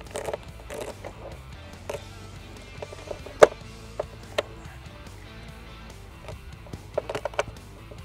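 Background music, with a few sharp cracks as a chef's knife cuts through a cooked lobster's shell; the loudest crack comes about three and a half seconds in, and a quick cluster follows near the end.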